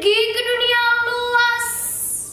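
A young girl's voice declaiming a line of poetry in a long, drawn-out, sing-song tone, a few held syllables ending in a long hissing 's'.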